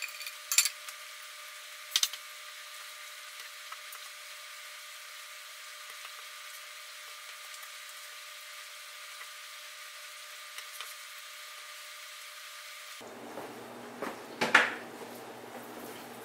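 A spatula clicking against a skillet and a glass plate, twice in the first two seconds, over steady faint hiss. Two more knocks come near the end.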